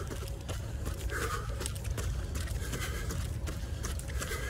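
Wind rumbling on the microphone of a camera held at arm's length by a runner, with crackling and rustling of clothing and his breathing during the run.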